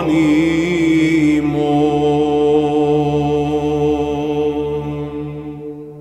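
Byzantine chant: the final word of the apolytikion drawn out on one long held note over a steady low drone (the ison). It fades out near the end.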